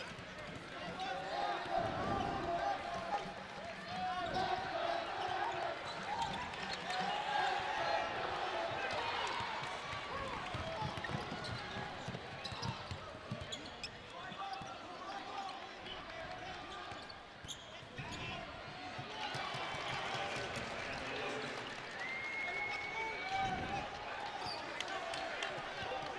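Live basketball game sound on the arena floor: a basketball bouncing on the hardwood court as it is dribbled and passed, under a steady murmur of voices from the players and crowd in a large hall.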